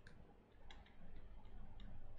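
Faint, irregular light ticks, about five or six in two seconds, of a stylus tapping on a tablet screen as short dashed strokes are drawn.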